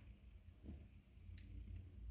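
Near silence: room tone with a faint, steady low hum and one or two faint ticks.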